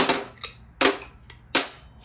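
Steel sockets and their clips clacking against a metal socket rail as they are taken off and moved around on it: a string of five sharp metallic clacks.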